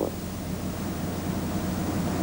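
Steady hiss with a low mains-like hum: the background noise of an old 1979 film soundtrack.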